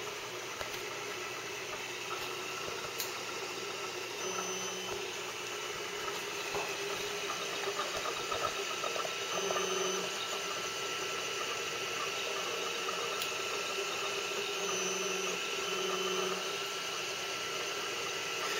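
Glacier Steel 1616 3D printer running a print with its stepper motors and TF3D print head: a steady mechanical hum and hiss with a faint constant whine. Short pitched motor tones come and go a few times as the axes move.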